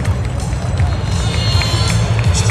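Music over a public-address system with a deep, steady rumble underneath from an F-16's jet engine as the fighter accelerates down the runway on its takeoff roll.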